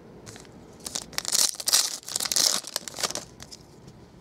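Foil trading-card pack torn open by hand, its wrapper crinkling: a run of rustling, tearing noise starting about a second in and lasting about two seconds.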